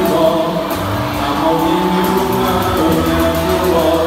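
Live band music: a drum kit with quick cymbal strokes over sustained pitched notes.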